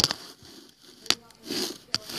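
Handling noise from the camera being moved and set down: three sharp clicks and knocks, one at the start, one about a second in and one near the end, with a short breath or sniff between the last two.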